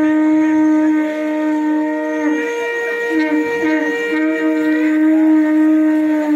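Two conch shells (shankha) blown together in long held notes at two different pitches, the lower one faltering briefly a couple of times.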